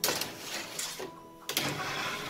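Metal baking tray sliding and scraping across a metal oven rack, twice: once at the start and again about one and a half seconds in.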